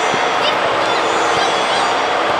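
Echoing indoor football-hall ambience: a steady noise bed with players' and spectators' voices calling out. A few soft thuds of the ball being kicked sound through it.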